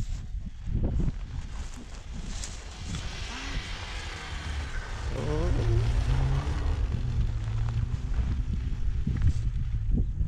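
Distant rally car engine running through the snow course, its pitch rising and falling from about halfway in, with wind rumbling on the microphone.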